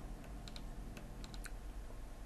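A handful of faint, quick clicks in the first second and a half of a quiet pause, over a low steady room hum.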